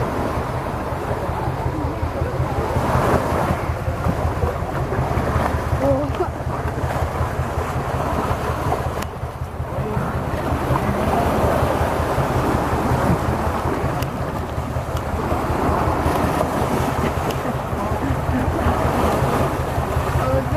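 Shallow surf washing on a sandy beach and water sloshing around stingrays thrashing in the shallows, over a steady wind rumble on the microphone.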